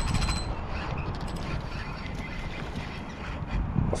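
A fishing reel clicking in quick runs during the first second and a half as a hooked pompano is brought in, over a steady low rumble of wind on the microphone.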